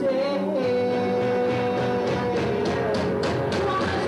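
Live rock band playing electric guitars and drums. One long held note with a slight waver sits over the band, and cymbal strikes come in through the second half.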